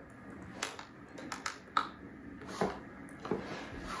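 Quiet handling sounds of a closed titanium PowerBook G4 laptop being moved by hand on a tabletop: a scattering of short clicks and light knocks, several of them in the first two seconds.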